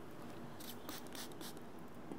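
Hand spray bottle misting liquid onto hair: several short, faint hissing squirts in quick succession, bunched in the first half.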